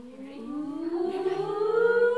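Voices sliding slowly upward in pitch in one long, unbroken rising glide, like a siren, growing louder as it climbs: a vocal glide sung as the stars are lifted up high in a children's music class.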